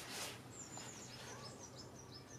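A faint songbird chirping: a quick run of short, high chirps, several a second, starting about half a second in.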